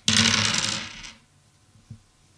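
A handful of six-sided dice thrown onto a tabletop, clattering and rolling for about a second before settling, then one small click near the end. This is a dice-pool roll for a dexterity check.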